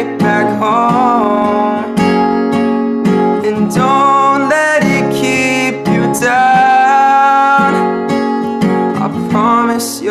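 Acoustic guitar strummed under a young man's singing voice, with one long held note about six seconds in.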